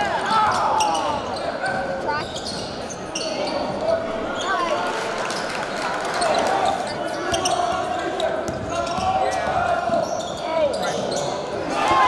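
Live basketball game sound in a gym: a ball dribbling on the hardwood floor, sneakers squeaking in short glides as players cut and run, and a murmur of crowd and player voices throughout.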